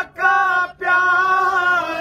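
Unaccompanied male voice chanting a naat, a devotional kalam, in long held notes, with two brief breath pauses between phrases.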